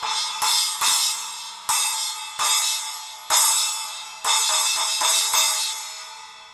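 Zildjian 8-inch A Custom splash cymbal struck with a drumstick about eight times, each hit ringing brightly and fading before the next; the cymbal's crack near the bell has been repaired by cutting it out with a hole.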